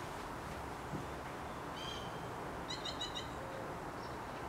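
Small birds calling over a steady hiss: one short whistled call about two seconds in, then a quick run of high chirps a second later.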